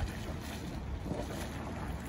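Steam and mud sputtering and hissing from a small mud cone in a boiling hot-spring mud pot, a steady noisy rush.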